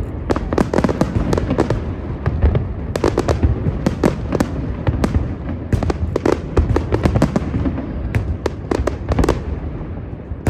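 Fireworks display: aerial shells bursting in quick irregular succession, many sharp bangs, several a second at times, over a continuous low rumble.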